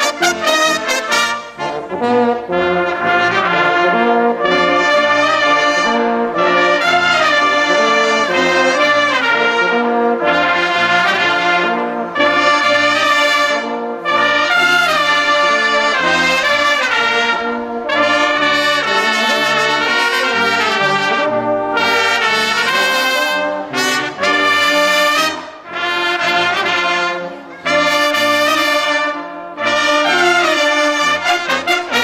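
Brass fanfare band playing together: trumpets with trombones and baritone horns. The music is loud and comes in phrases separated by brief breaks.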